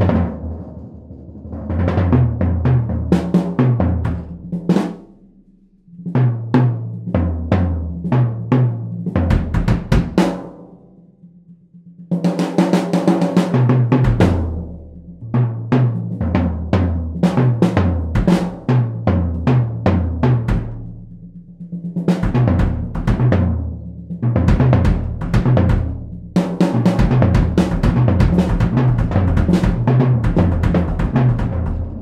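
Vintage 1940s Slingerland Radio King drum kit played with soft felt mallets: rolling tom and bass drum notes with swelling washes from the ride cymbal. The playing comes in phrases, with brief dips about six and twelve seconds in.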